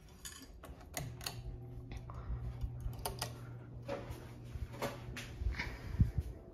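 Electric ceiling fan motor humming steadily from about a second in, with a scattering of light clicks and clinks throughout.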